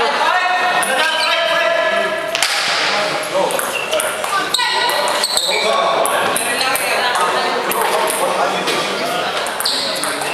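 Table tennis ball bouncing with short clicks between points, under people talking in a large, echoing hall. The voices are loudest in the first two seconds or so.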